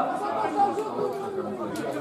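Indistinct chatter of several people's voices talking over one another.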